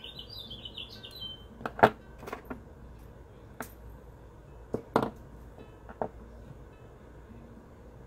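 A songbird chirping in a quick warbling run for about the first second and a half. Then a series of sharp separate clicks and taps from steel jewellery pliers working aluminium wire and being set down on the wooden table, the loudest about two seconds in.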